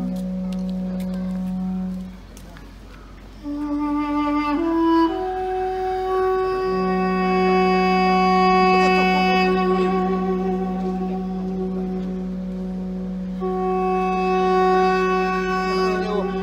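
Duduk playing a slow melody of long held notes with small wavering ornaments, entering about three and a half seconds in, over a steady low drone from the Russian hunting horns. The drone drops out briefly early on and returns a few seconds after the melody begins.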